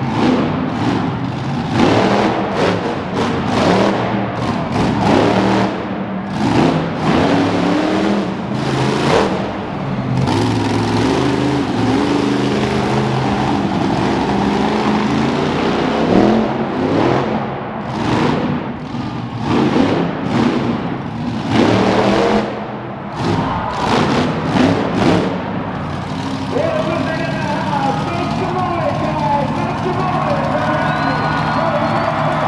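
Monster truck engine revving in repeated surges during a freestyle run on an arena dirt floor, with a voice and music mixed in.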